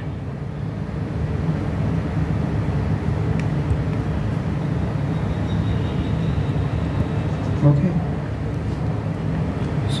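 Steady low rumble that swells about a second in and holds evenly, like a vehicle engine running nearby.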